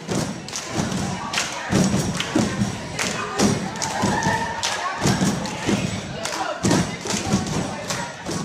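Repeated heavy thumps, about two a second at an uneven pace, with music under them.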